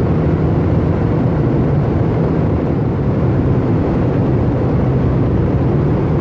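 Steady drone of road and engine noise inside a moving car's cabin, with a low hum that holds even throughout.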